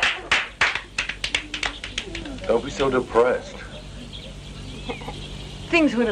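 A small group clapping, dying away over the first second or so, followed by a few voices.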